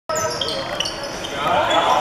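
Indoor handball game: sneakers squeaking in short high chirps on the court floor as players cut and change direction, over shouting voices that grow louder about halfway through.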